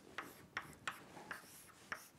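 Chalk writing on a chalkboard: a faint series of short taps and scrapes, about five strokes in two seconds.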